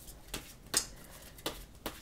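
Tarot cards being handled and shuffled in the hand: four short, soft card snaps, the loudest about three-quarters of a second in.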